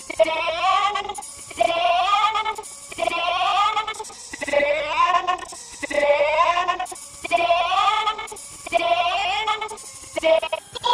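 A short cartoon voice clip, heavily processed with a wobbling, warbling pitch effect, looped over and over. It repeats about eight times, each repeat rising in pitch and lasting about a second, with short gaps between.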